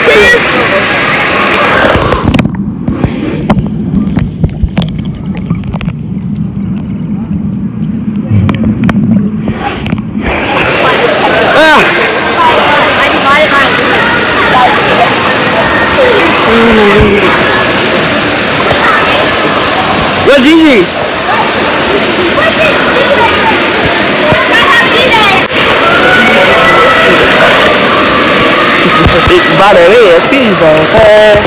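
Pool water sloshing and splashing around a camera held at the water's surface, the sound turning muffled and dull from about two and a half seconds in to ten seconds in while the camera is under the water. Children's voices and shouts come through over the splashing.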